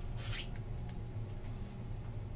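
Trading cards being handled: a short swish of card sliding against card near the start, then a few faint ticks, over a steady low hum.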